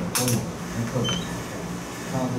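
A man's voice talking in a classroom, with a short hiss just after the start and a brief, faint high-pitched beep about a second in.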